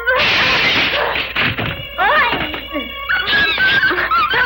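Window glass shattering and the wooden frame splintering, a loud crash right at the start that dies away over about a second, over background music.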